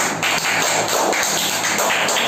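A small group of children clapping their hands in applause for a classmate.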